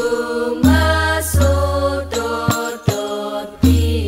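Al-Banjari sholawat music: a singer holds long, ornamented notes over struck frame-drum beats with a deep sustained bass underneath.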